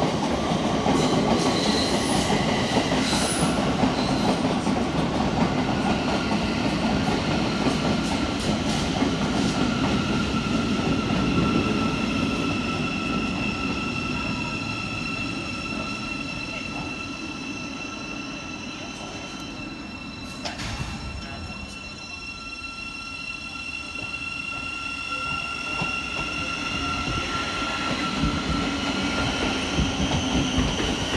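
Thameslink Class 700 electric multiple units moving along the platform, a steady rumble with high, steady whines or wheel squeal over it. The sound is loud at first, fades to its quietest about two-thirds of the way through, then builds again near the end as another train comes in.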